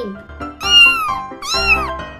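Kitten meowing twice, two high, arching meows about half a second each, over background music.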